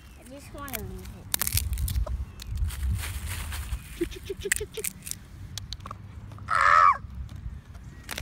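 Peahen calling: a quick run of about six soft, low clucking notes, then a single loud, harsh call near the end.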